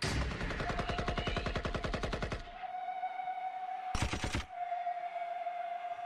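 Rapid burst of machine-gun sound effect through the concert PA, about a dozen shots a second for two and a half seconds, then cut off suddenly. A single held high tone carries on behind it, with one more short blast about four seconds in.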